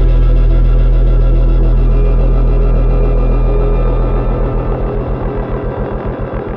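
Deep cinematic bass hit ringing out as a loud, low drone that slowly fades and breaks into a rapid pulsing flutter in its last couple of seconds, with soft ambient music tones above it.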